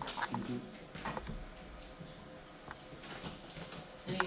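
Meeting-room background: scattered light knocks and shuffling, with a few faint murmured voices near the start.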